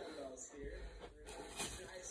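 Indistinct speech that the recogniser did not make out, with a low rumble through the second half.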